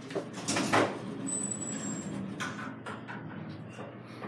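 Fujitec traction elevator's car doors sliding, over a steady low hum in the cab.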